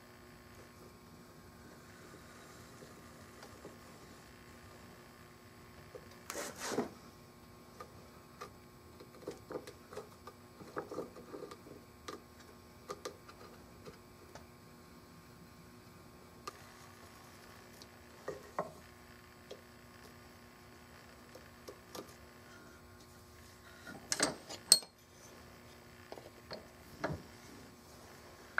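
Hand tools and a wooden gunstock blank being handled at a bench vise: scattered light clicks and knocks, a louder knock about six seconds in and the loudest cluster near the end, over a faint steady hum.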